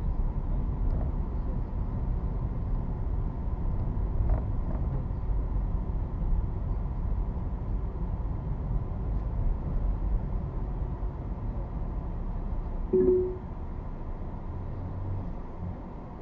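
Low rumble of a car driving slowly through city streets, heard from inside the cabin. A short single tone sounds about three seconds before the end, and the rumble is a little quieter afterwards.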